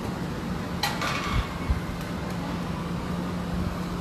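Steady low machine hum over outdoor background noise, with a brief sharp noise about a second in and a couple of low bumps just after.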